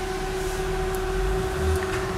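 Steady background hum with a constant mid-pitched tone and a low rumble that swells slightly in the second half, inside a stationary car's cabin.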